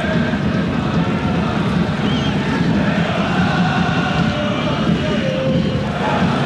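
Football stadium crowd noise: a steady, dense wash of many voices that holds at one level throughout.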